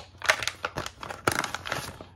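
Plastic packaging crinkling and rustling in irregular bursts as it is handled: a clear plastic tray and a plastic pouch.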